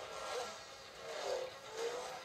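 Film soundtrack playing through a TV's speaker: vehicle engines revving, their pitch rising and falling several times in a chase.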